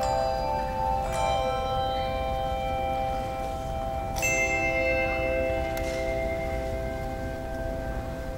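Handbell choir ringing chords: a chord struck about a second in and another about four seconds in, each left to ring on and slowly fade.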